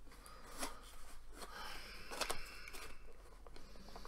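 Cardboard mug box being handled and opened: light rustling and scraping of card, with a few sharp ticks and crinkles.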